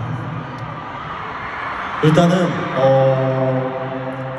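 Stadium crowd noise, then about halfway a man's voice through the PA microphone, ending in one long vowel held at a steady pitch.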